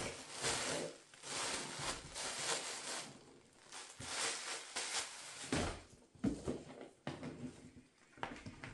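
Thin black plastic poly bag crinkling and rustling in irregular bursts as it is handled and unwrapped. A couple of dull thumps come a little past the middle.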